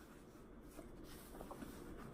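Near silence: room tone with a few faint, brief rustles, from a cotton T-shirt's sleeves being rolled up by hand.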